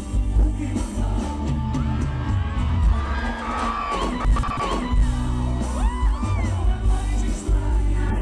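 Brazilian sertanejo duo's live band playing through a concert PA, with a lead vocal, electric guitar and heavy bass. Crowd voices yell and whoop over the music around the middle.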